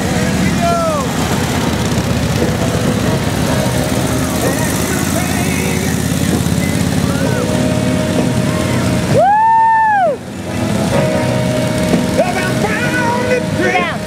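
Several old kickstart motorcycles running together in a steady low rumble. About nine seconds in, one whistle blast of about a second rises, holds and falls off: the captain's signal to the riders.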